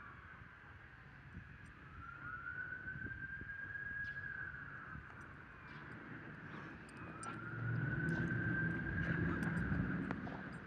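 An emergency vehicle's siren wailing, one slow up-and-down tone that climbs and falls about every five seconds. A low noise grows louder near the end.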